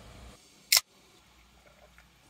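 A single short, sharp click about three-quarters of a second in, over faint room tone.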